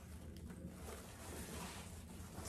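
Faint rustling of fabric and glitter ribbon loops as a gathered wreath bow is pulled and adjusted by hand, over a low steady hum.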